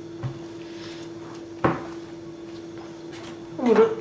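Hand working a soft yeast dough in a glass bowl, with a small thump near the start and one sharp knock about one and a half seconds in.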